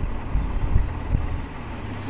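Cloth rustling with several low thumps as a bolt of printed linen fabric is unrolled by hand.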